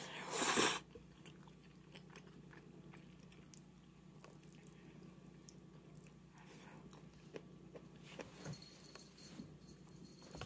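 A person slurping in a mouthful of ramen noodles: one short loud slurp about half a second in, then quiet chewing with small mouth clicks.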